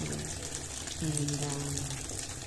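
Kitchen tap running, a steady stream of water splashing onto vegetables in a stainless steel sink.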